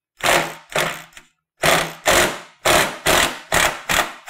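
Cordless impact driver hammering on a rust-seized tailgate latch screw in a series of short trigger bursts, about eight in all, trying to break it loose.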